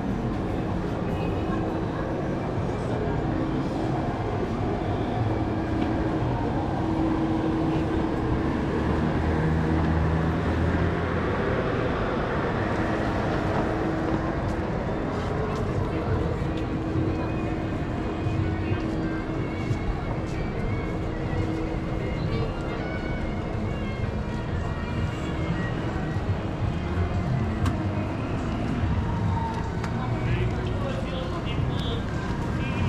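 Busy pedestrian shopping street ambience: a steady mix of passers-by talking and music playing from shops.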